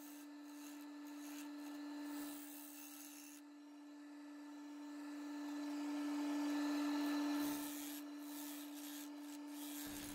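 Wood lathe running with a steady hum, and a bowl gouge rubbing and scraping on the spinning maple blank as it cuts.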